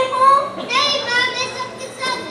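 A child speaking into a handheld microphone, the voice high-pitched and amplified over a PA.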